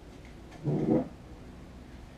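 Wooden chair dragged across a hard floor, a single short pitched scrape lasting under half a second.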